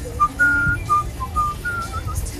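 A person whistling a short tune: a run of about eight clear notes that step up and down in pitch, over a low rumble.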